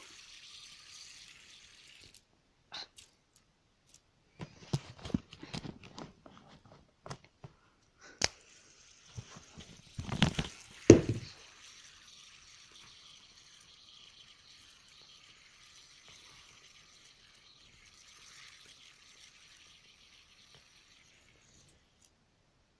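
Hands handling things on a table close to the microphone: scattered knocks and light clicks, with two louder thumps about ten and eleven seconds in. A faint steady hiss runs underneath afterwards.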